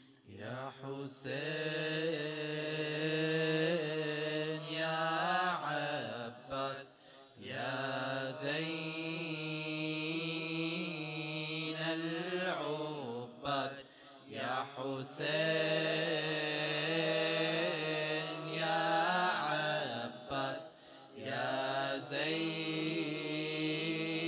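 Male voices of a nasheed group chanting an Arabic devotional song in long, ornamented phrases over a steady low held note, pausing briefly for breath about every six to seven seconds.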